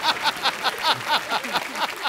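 Studio audience laughing, hearty 'ha-ha' laughter in quick even pulses, about seven a second, easing off near the end.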